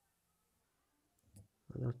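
Faint light ticks of a lock pick working the pins inside a five-pin Taymor pin-tumbler cylinder, a couple of them a little over a second in. A man starts to speak near the end.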